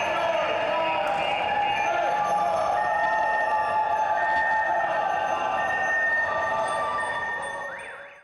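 The sound of a crowd of cyclists riding through an echoing underpass: voices mixed with several long-held tones. It all fades out near the end.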